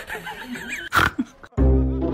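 Wavering animal calls with a loud, sharp animal cry about a second in, then background music with a deep bass line cutting in abruptly at about one and a half seconds.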